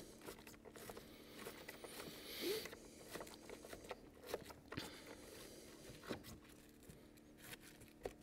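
Faint handling sounds from gloved hands tightening the cartridge's retaining bolt on a cordless lawn scarifier: small scattered clicks and scrapes over a low steady hum.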